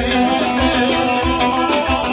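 Manele band playing live: an instrumental passage over a steady beat.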